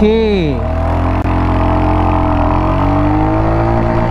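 Royal Enfield Hunter 350's single-cylinder engine pulling under acceleration on the move, its note rising slowly, with wind rush around it. A brief voice at the very start and a single click about a second in.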